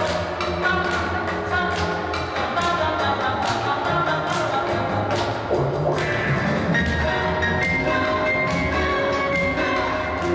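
Instrumental accompaniment music for a rhythmic gymnastics routine, played over a loudspeaker in a sports hall, with a regular beat.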